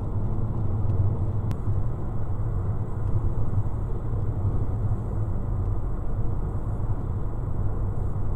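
Steady low rumble of road and engine noise heard inside a car's cabin while it drives at highway speed.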